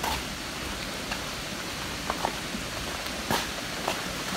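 Steady rush of floodwater spilling across a dirt road from an overflowing fish pond, with a couple of faint knocks.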